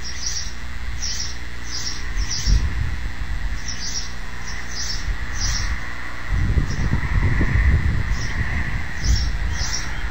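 Small bird chirping in quick series of short, high notes, several a second, with pauses between the series. Underneath is a steady hiss, and from about six seconds in there is a louder low rumbling noise for some three seconds.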